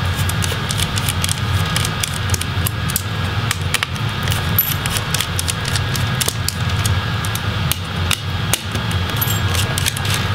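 Small screws being unscrewed from a laptop motherboard with a small Phillips screwdriver and lifted out by hand: light, scattered metallic clicks and ticks over a steady low hum.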